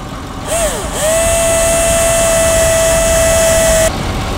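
Cordless drill blipped briefly, then spun up to a steady high whine as its bit bores into the rubber tread of a run-flat car tyre, cutting off suddenly near the end.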